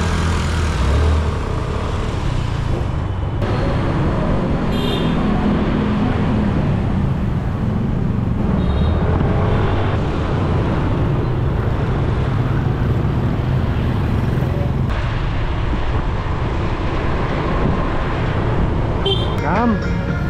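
Scooter ride through busy motorbike traffic: small scooter engine running and a steady rush of wind over the microphone, with the hum of surrounding motorbikes and cars.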